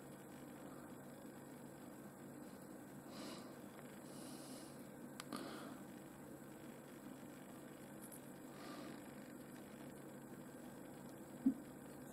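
Quiet room tone with a few faint, soft handling noises as a piece of boulder opal rough is turned in the fingers; a small click about five seconds in and a short tap near the end.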